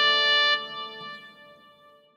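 The final held chord of a Hindi song's instrumental ending, sustaining for about half a second and then fading away to nothing over the next second and a half.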